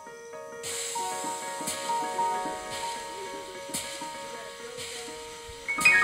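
Electronic keyboard playing sustained chords and a slow melody line, with a soft hiss recurring about once a second; near the end, louder and higher notes come in.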